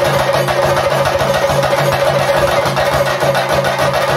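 Chenda drums beaten with sticks in a fast, steady, dense rhythm, with a saxophone holding notes underneath: Theyyam ritual drumming.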